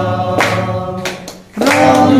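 Devotional chanting of Sai Baba's name, sung by voices with hand clapping in time. The singing dips briefly about one and a half seconds in, then comes back in.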